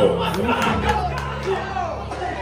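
Crowd yelling over a hip-hop beat with a steady bass line, with a few sharp shouts in the first second or so.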